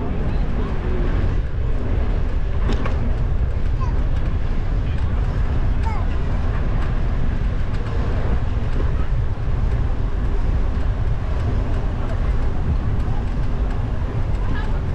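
Steady low rumble of wind and riding noise on a bicycle-mounted GoPro's microphone as it rolls along, with brief faint voices of people walking past.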